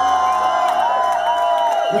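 A live rock band's last note held out, a steady high tone with a wavering upper line, over a cheering crowd.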